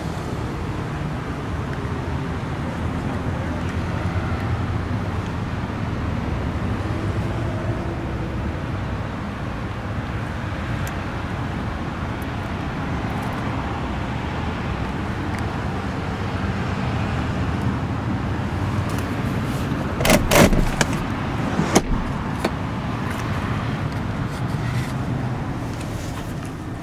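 Steady low hum of a car engine idling. A quick burst of sharp knocks and clatter comes about 20 seconds in, with one more knock just before 22 seconds.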